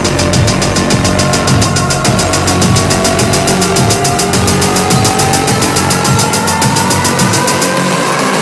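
Dark electronic midtempo music in a build-up: a rapid, even run of ticks under synth tones that climb steadily in pitch, with the bass thinning out near the end.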